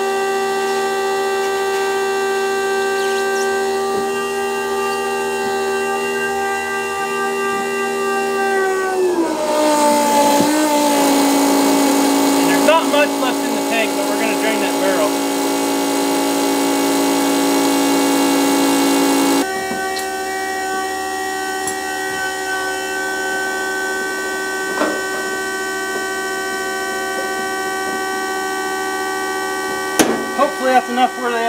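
12-volt electric diesel transfer pump running with a steady whine while it fills a tractor's tank. About a third of the way in its pitch drops and a louder rushing noise joins. About two-thirds of the way in the sound switches suddenly back to a higher, steadier whine.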